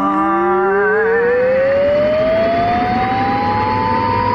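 Intro music for a horror podcast: a single tone slides slowly and steadily upward in pitch, siren-like, over held notes that waver.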